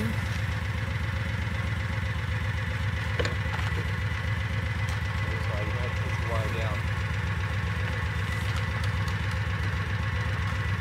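Vehicle engine idling steadily, heard from inside the vehicle's cab, with faint distant voices about five to seven seconds in.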